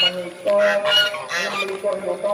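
Domestic geese honking, a run of repeated calls.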